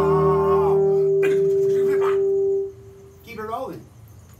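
A small brass band with guitar holds its final chord: a wavering tone ends under a second in, and one steady note is held until it cuts off at nearly three seconds. After a short pause a brief voice follows.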